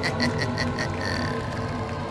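Background music: a fast, even ticking beat, about eight ticks a second, over a low held drone.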